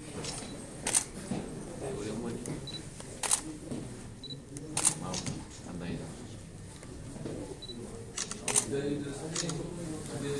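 Camera shutters clicking a few times, several seconds apart, over low murmured conversation.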